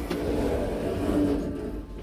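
Passenger lift's stainless-steel doors sliding open with a mechanical rumble lasting about a second and a half, then fading.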